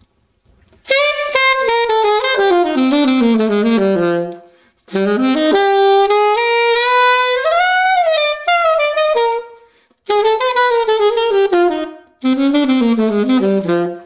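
Unaccompanied alto saxophone played through a refaced Meyer size 5 mouthpiece with a bright tone, in four jazz phrases split by short breaths; the first phrase is a long falling run, the second climbs and then comes back down.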